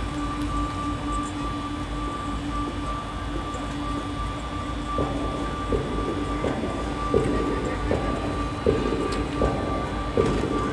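Quiet opening of a marching band show: a soft sustained held tone, joined about halfway through by soft, evenly spaced percussion hits, over a low steady rumble.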